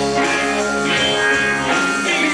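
Live rock band playing: electric guitars over a drum kit, amplified through the stage PA.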